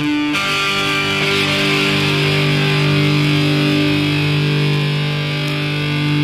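A punk rock track from a 7-inch record starts abruptly on a single loud, distorted electric guitar chord that is held and rings steadily for about six seconds.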